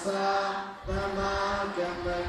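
Buddhist chanting: a voice recites on a steady, held pitch in phrases broken about once a second, with a low rumble underneath from about halfway.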